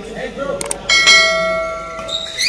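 A bell-like ding sound effect about a second in: a clear ringing tone that fades away over about a second, just after a couple of short clicks.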